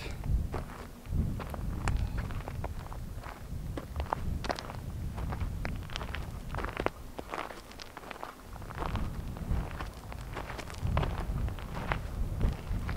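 Footsteps on loose, rocky ground, a string of irregular scuffs and small clicks of grit and stone, over a low rumble of wind on the microphone.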